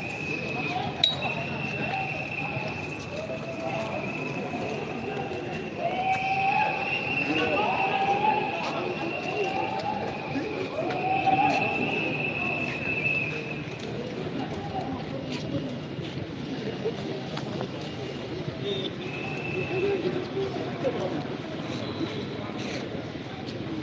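Voices of a street crowd talking and calling out over one another, with a steady high-pitched tone sounding on and off above them, longest through the middle.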